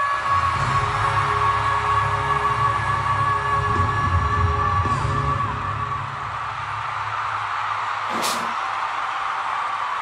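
A male pop singer holding a long, high sustained note (C#5) over a live band in a concert recording. The note and band fade out about six seconds in, leaving crowd noise, with a brief thump about eight seconds in.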